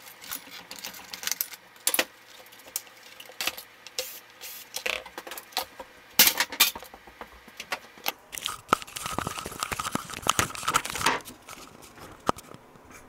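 Plastic casing and metal parts of a word processor being handled and set down on a workbench: irregular clatters, clicks and knocks. Near the end, a steady whir lasts a couple of seconds.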